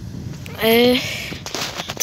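A man's short voiced sound, rising slightly in pitch, about half a second in, over steady low background noise with a few faint clicks.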